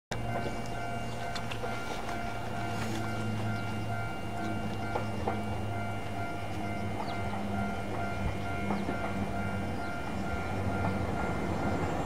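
Electric train, a Nagano Electric Railway 8500 series, heard off-screen as a steady hum of several held tones that grows slightly louder near the end, with a few faint clicks.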